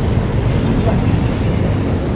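Market background noise: a steady low rumble with faint voices under it.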